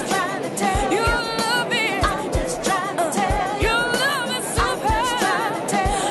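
Pop song: a singer's voice with vibrato over a steady drum beat of about two beats a second.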